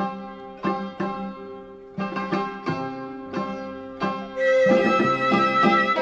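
Instrumental opening of a Vietnamese chèo folk song: plucked string notes that ring and fade one after another, joined about four seconds in by a louder, held melody line.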